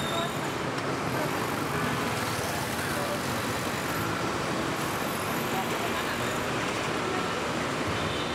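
Steady road traffic noise with indistinct voices in the background.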